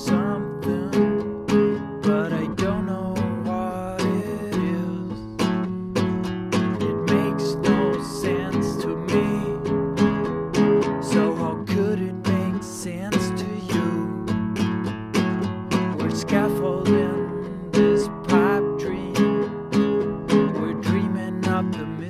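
Nylon-string classical guitar strummed in a steady, even rhythm, an instrumental passage of chords without singing.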